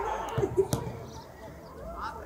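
Faint distant voices with one sharp knock a little under a second in.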